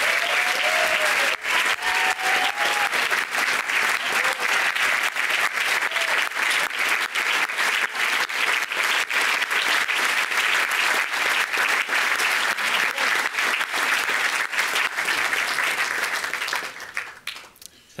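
A large audience applauding: dense, steady clapping with a few voices calling out in the first few seconds. The applause dies away over the last second or two.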